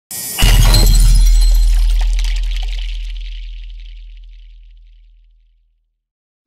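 Intro sound effect: a sudden deep boom hit with glass shattering over it, the clinking shards and the low boom dying away slowly over about five seconds.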